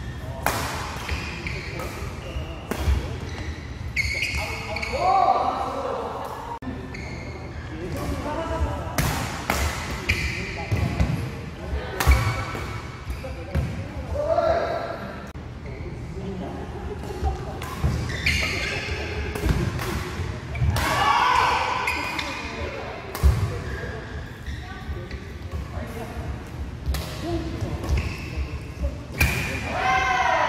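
Badminton rallies in a large indoor hall: a string of sharp, irregularly spaced racket hits on the shuttlecock, with footwork on the court and players' voices.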